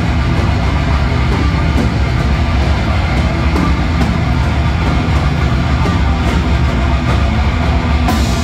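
Thrash metal band playing live: distorted electric guitars, bass guitar and drum kit in a loud, dense, unbroken wall of sound.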